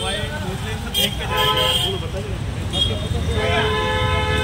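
Busy street traffic with engines running as a steady low rumble, and a vehicle horn sounding twice: a short honk about a second and a half in, then a longer held blast near the end.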